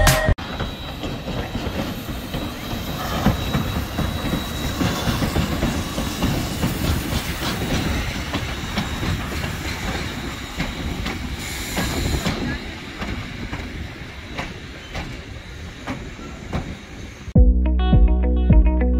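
Heritage passenger train rolling along, a steady rumble with wheels clacking irregularly over the rail joints and a short high hiss about twelve seconds in. The train sound cuts in just after the start, replacing music, and stops shortly before the end, when guitar music returns.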